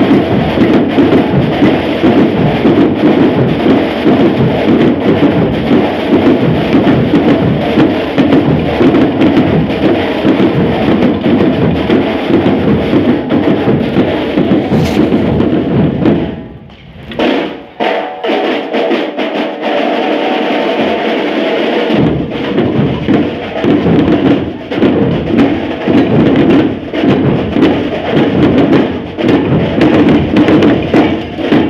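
Marching drum corps playing a loud, continuous cadence on marching snare drums and multi-drum tenor sets, with a brief break a little past halfway before the drumming resumes.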